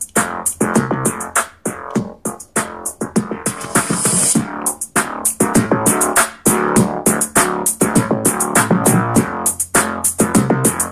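Royalty-free electronic music with a steady drum-machine beat and keyboard, played through the speakers of a Skullcandy Air Raid portable Bluetooth speaker to demonstrate its sound: clear, with little bass.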